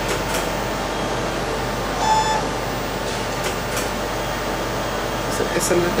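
Robotic book scanner running with a steady rush of air, a short electronic beep about two seconds in, and a few faint clicks.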